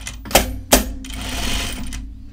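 Juki industrial sewing machine: two sharp clacks in the first second, then the machine stitching steadily through the fabric for the last second.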